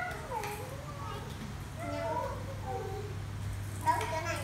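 Young children's high-pitched voices calling out and squealing in short gliding snatches, over a steady low hum.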